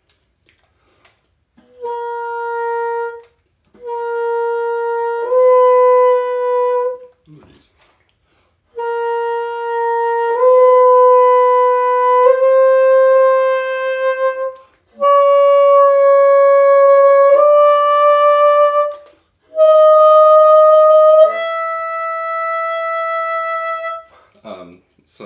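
Bassoon with a straight-bend Wolf Grundmann bocal playing held notes in the extreme high register. It goes in three phrases with short gaps, stepping up from high B-flat; the last phrase climbs to a long high E. This tests how easily the top notes respond, and the high E speaks easily on this bocal.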